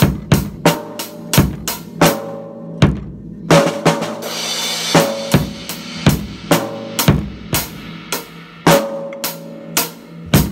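Drum kit played in a steady beat, snare and bass drum strokes about two to three a second, with a cymbal ringing out about three and a half seconds in.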